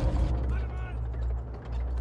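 War-film sound of an approaching tank: a deep steady engine rumble with the rapid clanking and rattling of its tracks.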